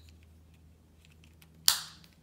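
A single sharp plastic click about one and a half seconds in, fading quickly: the protective cap of a Dario glucose meter's lancing device snapping into place.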